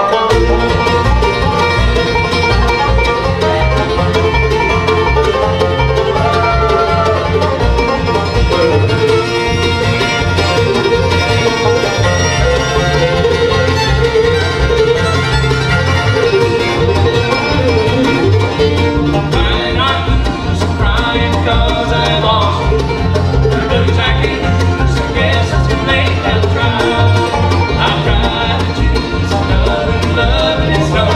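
Bluegrass band playing live: the fiddle leads over banjo, acoustic guitar, mandolin and upright bass, with the bass keeping a steady, even beat.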